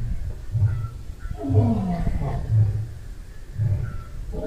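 A big cat grunting in a slow series, with about one deep grunt a second and a falling moan near the middle.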